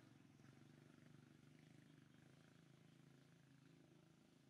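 Near silence: a faint, steady low hum.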